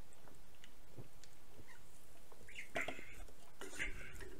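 A man drinking from an aluminium drink can: faint swallows and small clicks. About three seconds in come short breathy sounds close to the microphone, as he finishes the drink.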